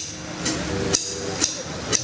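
Drum kit keeping time alone during a stop in a blues number: five sharp, bright ticks evenly spaced about twice a second over faint held notes.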